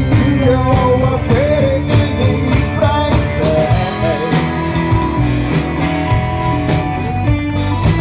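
Live rock band playing: a male vocalist singing over electric guitar, bass guitar, keyboard and drums.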